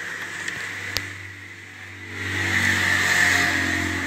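Electrical hum from a powered-up audio amplifier: a steady low buzz with a single click about a second in, then swelling louder about two seconds in as the input wiring is handled.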